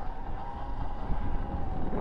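A Rawrr Mantis X electric dirt bike being ridden: wind buffets the microphone, with a faint steady motor whine underneath.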